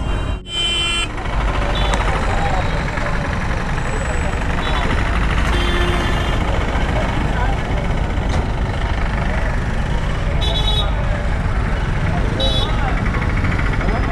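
Busy road traffic with a steady low rumble and background voices of a crowd, broken by several short vehicle-horn toots.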